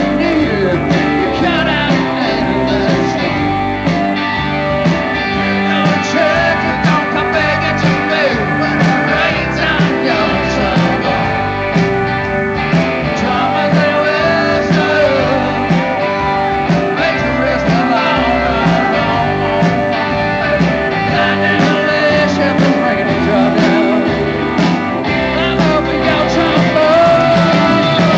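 Rock band playing live: electric guitars, drums and keyboards, loud and steady with a driving beat.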